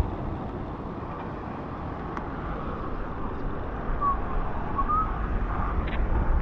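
Wind buffeting the action camera's microphone with a steady low rumble, over the hiss of bicycle tyres rolling on a rain-soaked road.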